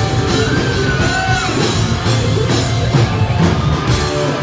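Live hard rock band playing loud, with electric guitars and a drum kit, and a long held high note that steps up in pitch about half a second in.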